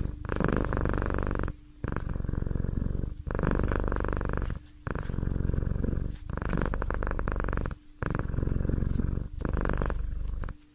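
Domestic cat purring close up, in a steady rhythm of breaths: each stretch of purring lasts about a second and a half, with a brief pause between breaths.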